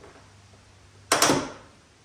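A single sharp knock about a second in, ringing on briefly, from handling at the raised Jeep Gladiator hood.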